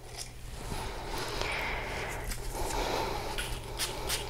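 Faint handling sounds of a perfume bottle and its cap in the hands, with two short, sharp sounds near the end.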